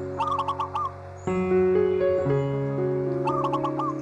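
Soft piano music holding slow, sustained chords, with a new chord struck about a second and a quarter in. Over it a bird calls twice, a quick run of four or five notes near the start and again near the end.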